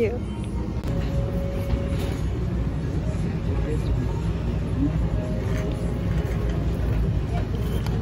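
Steady low rumble of store background noise with faint voices in the background.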